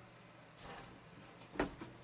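A sharp wooden knock about one and a half seconds in, with a lighter click just after, as the folding leaf of a teak boat table is handled and set in place; a faint steady low hum underneath.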